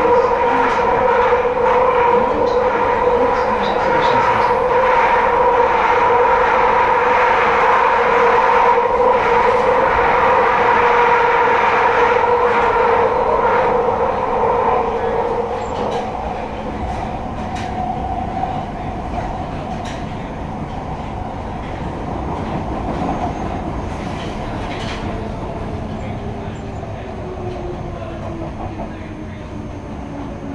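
Piccadilly line 1973 Stock tube train running through a tunnel, heard from inside the carriage. A loud, steady high-pitched whine in two tones goes through the first half, then the running gets quieter, and near the end a whine falls in pitch.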